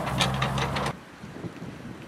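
Excavator's diesel engine running steadily, with wind buffeting the microphone. About a second in it cuts off abruptly, leaving quieter wind noise.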